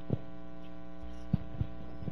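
Steady electrical hum from the sound system, with three brief soft thumps, the loudest about a second and a third in.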